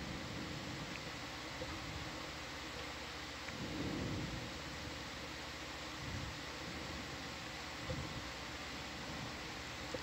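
Steady low hiss and hum of room noise, with a slight swell about four seconds in.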